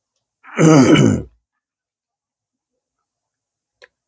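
A man's short, loud vocal sound with no words, falling in pitch and lasting a little under a second.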